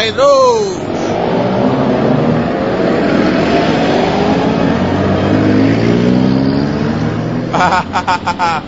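A motor vehicle engine running and speeding up, its pitch climbing slowly over several seconds above a steady hiss. A brief shout opens it.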